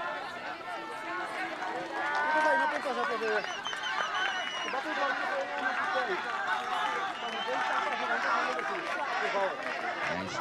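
Many voices at once: spectators and players on the sidelines shouting and cheering encouragement, overlapping and steady throughout.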